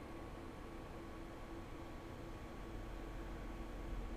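Low, steady background hiss with a faint hum and a thin steady tone: the room tone of a desk microphone, with no distinct sound event.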